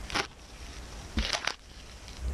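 Masking tape being peeled slowly back off a spray-painted acrylic sheet: short crackling rips in two spells, one just after the start and a quick cluster past the middle, with a soft knock at the start of the second.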